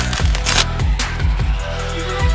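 Electronic dance music with a heavy, steady bass line and hard drum hits, with a bright crash about half a second in.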